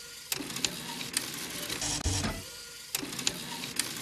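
Sound bed of a TV programme bumper: a noisy, clicking, mechanical-sounding loop with a faint high tone, repeating about every two seconds.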